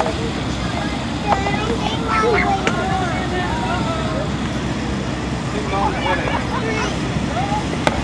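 Outdoor background of distant voices over a steady low rumble, with a few light taps, among them a child's mini-golf putter tapping the golf ball.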